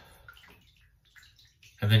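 Bath water in a filled tub sloshing and settling around a body lying back in it, fading out within the first half second, followed by a couple of faint drips or ticks. A man's voice starts near the end.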